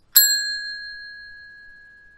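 Notification-bell sound effect: one bright, bell-like ding that rings out and fades away over about two seconds.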